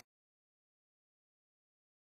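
Silence: the sound track cuts to nothing.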